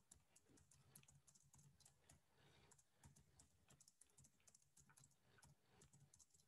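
Faint typing on a computer keyboard: an irregular run of soft key clicks.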